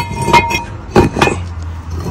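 Metal axle parts, a wheel hub and a cast-iron brake rotor, knocking and clinking as they are set down and picked up off a concrete floor: about four sharp knocks, some with a brief metallic ring.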